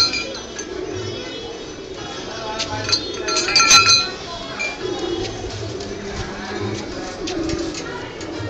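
A small hanging temple bell is struck several times in quick succession about three seconds in, clanging and ringing out for about a second.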